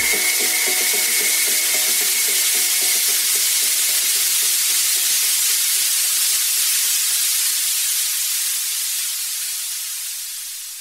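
White-noise sweep in a dance-music mix: a steady hiss fills the highs after the bass and beat cut out, with faint held tones under it. It thins out as the lower part is filtered away and fades down near the end.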